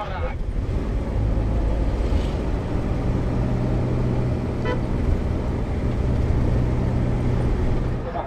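City traffic heard from a moving vehicle: a steady low engine drone with road noise, and a brief car horn toot a little past halfway.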